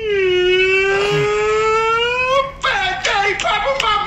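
A rubber balloon squealing as air is let out through its stretched neck: one long tone that dips and then rises in pitch, stopping after about two and a half seconds. An excited, whining voice follows near the end.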